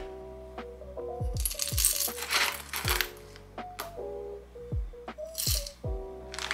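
Roasted coffee beans dropping from a spoon into the metal hopper of a stainless steel hand coffee grinder: one longer pour starting a little over a second in, and a short second pour near the end, over soft background music.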